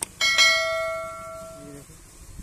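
A click, then a single bright bell ding that rings with several steady tones and fades over about a second and a half before cutting off sharply: the notification-bell sound effect of a YouTube subscribe-button animation.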